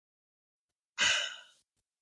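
A person sighing once: a short breathy exhale about halfway through, fading out over half a second, after a stretch of dead silence.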